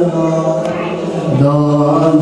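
A man's voice chanting a religious hymn in long, held melodic notes, dropping to a lower note about a second and a half in.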